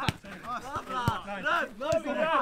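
Football being struck in quick one-touch passes: three sharp kicks, one at the start, one about a second in and one near the end, among players' short shouted calls.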